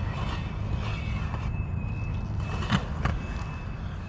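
Inline skate wheels rolling on concrete: a steady rumble with a faint thin high whine, and two sharp clicks close together about three seconds in.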